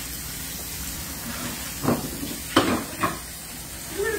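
Steady hiss of a lidded pot of collard greens simmering on the stove, with three short knocks in the second half.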